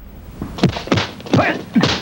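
Kung fu film fight soundtrack: a rapid run of dubbed punch and block impact sound effects, about two or three a second, each with a short shout, starting about half a second in.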